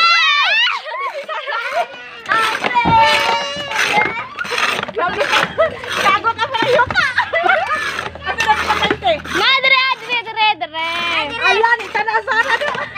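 Children's voices shouting and chattering excitedly over one another, many calls high-pitched.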